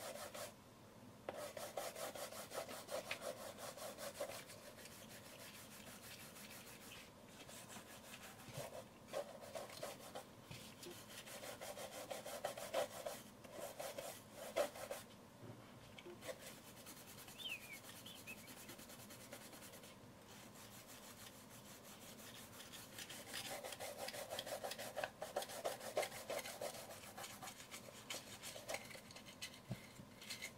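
Toothbrush bristles scrubbing the body of an old film camera in bouts of quick, rapid strokes, with brief pauses between bouts.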